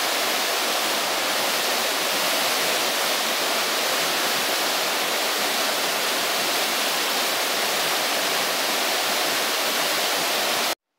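Waterfall pouring down a rock chute into a pool: a steady, even rush of falling water.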